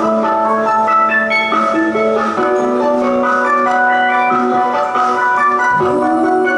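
Instrumental backing track playing a melody of clear held notes, stepping from note to note over a sustained low note.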